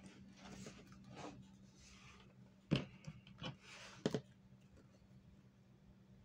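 Pencil strokes scratching on paper on a clipboard, in several short passes, with a few light knocks, the loudest about four seconds in. A low steady hum runs underneath.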